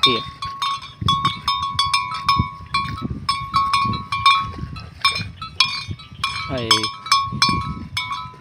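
A metal neck bell on a grazing water buffalo clanking over and over, several irregular strikes a second, each ringing the same note.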